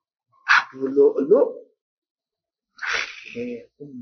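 A man's voice: a sharp breathy outburst about half a second in, then a short voiced phrase, a pause, and speech again from about three seconds in.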